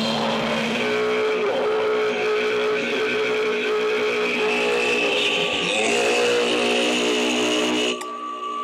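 Loud, sustained distorted electric guitar feedback through stage amplifiers: several held tones droning over a noisy wash, with no drum beat, cutting off abruptly at the end.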